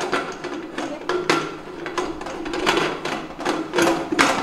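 Metal pressure cooker lid being twisted and worked into its locking notches on the pot, giving a string of irregular metal clicks and scrapes as its handle is brought round to meet the pot's handle.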